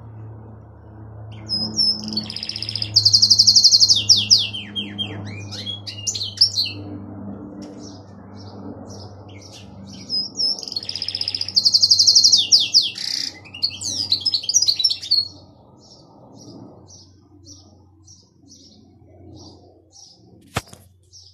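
Domestic canary singing. Two long song phrases, with fast trills and falling whistled sweeps, start about two seconds in and about ten seconds in. Toward the end comes a run of short, evenly spaced chirps.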